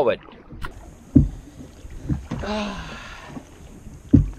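Long wooden paddles working a small open boat through the water: sharp thuds about a second apart with the strokes. A short voice with falling pitch comes about two and a half seconds in.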